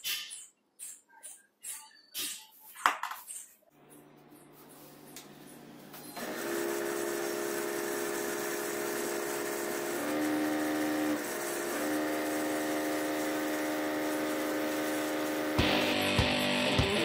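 Short clicks and knocks of metal crocodile clips being unclipped from a small DC motor's terminals. Then a steady humming tone of several fixed pitches sets in and holds, dipping briefly in pitch about ten seconds in.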